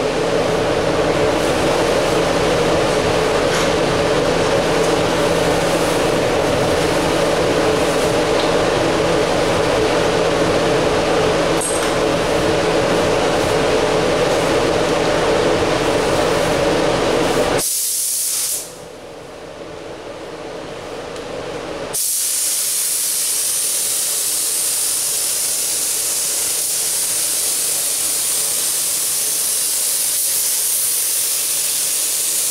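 A steady mechanical drone for most of the first 18 seconds, which then cuts out. About 22 seconds in, a gravity-feed paint spray gun starts a continuous high air hiss as the final mid coat of candy paint is sprayed onto the hood.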